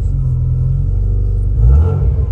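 Subaru Impreza GC8's turbocharged 2.2-litre stroker flat-four, built on an STI EJ207 block with equal-length stainless headers and a 76 mm exhaust, running at around 2,000 rpm with a deep, steady note. The revs rise slightly near the end, towards about 2,500 rpm.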